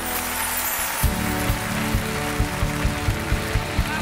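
Live pop band with a brass section playing an instrumental passage. A held chord dies away, then about a second in a steady drum beat starts at about four beats a second.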